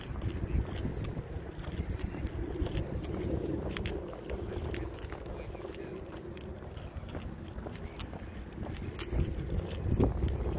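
Wind rumbling on the microphone of a camera carried while walking, with scattered light clicks and clinks from footsteps and handling.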